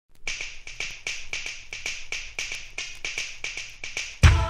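Opening of a new beat dance track: a quiet, dry electronic percussion pattern of sharp snap-like clicks, several a second, with no bass drum or melody yet.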